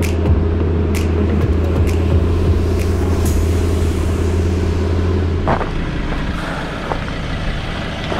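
Four-wheel-drive ute driving along a dirt track, its steady engine and tyre rumble picked up by a camera mounted on the outside of the vehicle. The rumble eases about five and a half seconds in.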